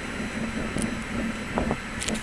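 Steady low rumble and hiss of outdoor city background, with wind on the microphone, and a faint knock about one and a half seconds in.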